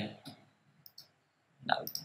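Two quick computer mouse clicks about a second in, between stretches of narration.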